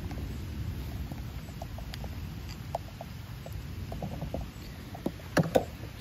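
Light rain pattering, with scattered small ticks over a low rumble of wind on the microphone. A few sharper knocks near the end as the camera is handled and picked up.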